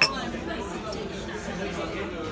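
Overlapping chatter of voices at café tables, with one sharp click right at the start.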